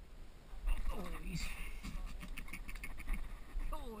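A short vocal exclamation about a second in, then a run of light clicks at about five a second, and a brief voice again near the end.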